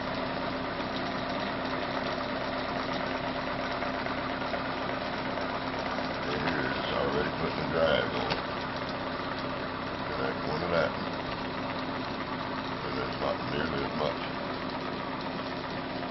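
Small DC electric motor, fed through a pulse width modulator, spinning a magnet rotor at about 500 RPM, running with a steady hum.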